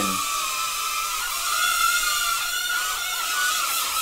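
Small hand-controlled UFO mini drone's propeller motors whining steadily. From about a second in, the pitch dips and recovers several times as the motors change speed.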